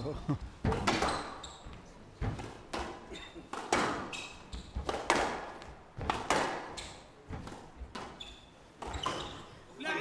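Squash ball in a fast rally: sharp hits of racket on ball and ball on the glass and front walls, roughly one to two a second, ringing in a large hall. Short high squeaks of court shoes come between the hits.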